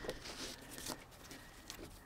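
Faint rustling of a fabric mesh insect screen being handled and unfolded by hand, with a couple of light ticks.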